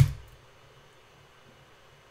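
One sharp computer keyboard keystroke right at the start, the command being entered, then only faint steady room hiss.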